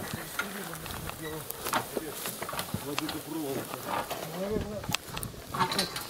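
An old wooden cart being shifted by hand, with scattered knocks and clatter from its boards and frame, and low, brief voices of the men working it.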